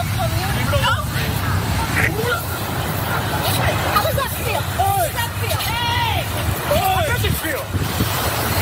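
Several people shouting in raised, strained voices, too garbled to make out words, over a steady low rumble.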